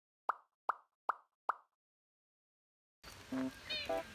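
Four quick bubbly pop sound effects, evenly spaced about 0.4 s apart, then silence. About three seconds in, background music starts.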